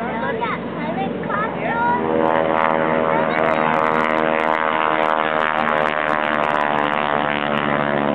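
Propeller-driven aerobatic airplane's engine droning steadily overhead, swelling loud about two seconds in as it makes a low pass. Voices are heard over the first two seconds.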